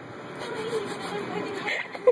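A low, quiet voice murmuring over faint background noise.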